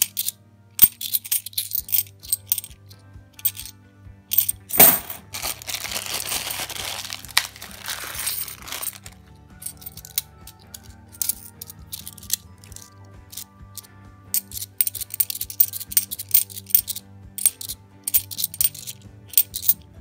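A handful of UK 50p coins clinking and sliding against each other as they are thumbed through one at a time, with a few seconds of denser scraping and shuffling about five seconds in. Background music plays underneath.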